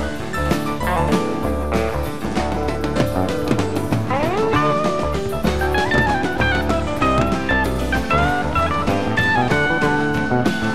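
Rock band playing live, with an electric lead guitar improvising a melodic line over bass, rhythm guitar and drums; the lead slides quickly upward about four seconds in.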